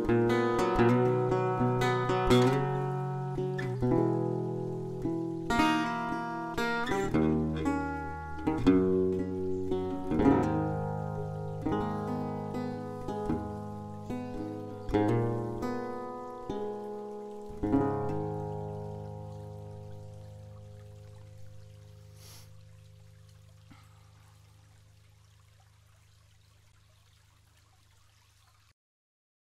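Acoustic guitar playing the instrumental close of a song: picked notes and strums, then a last chord about two thirds of the way through that rings on and slowly fades out.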